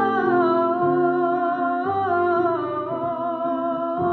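A woman singing solo over an instrumental accompaniment, holding long notes that step downward in pitch.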